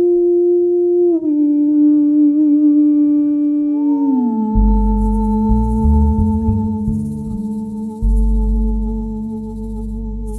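A woman's voice holding a long wordless "ooh" that steps down in pitch about a second in and slides lower about four seconds in. Upright double bass notes come in underneath about halfway through.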